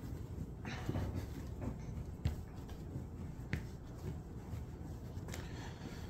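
Bread dough being kneaded by hand on a countertop: faint pushing and rubbing, with a few light knocks.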